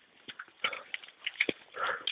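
Running footsteps: shoes slapping irregularly on a wet paved path, several runners' steps overlapping, with a short rustling burst near the end.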